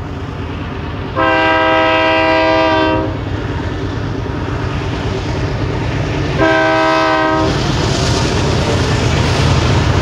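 Diesel locomotives of an approaching BNSF freight train running, a low rumble that grows louder, while the lead unit's multi-chime air horn sounds twice: a long blast about a second in and a shorter one past the six-second mark.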